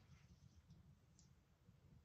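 Near silence: faint room tone with one small click about a second in.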